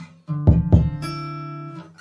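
Instrumental music with no vocals: a chord with deep bass strikes about half a second in, then slowly dies away.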